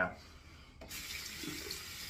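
Sink tap running, turned on a little under a second in, as a straight razor is dipped to rinse it.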